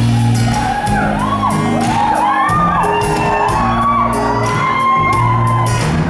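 Live band vamp with steady bass notes and a regular clicking beat. Many audience voices make overlapping rising-and-falling whooping calls over it.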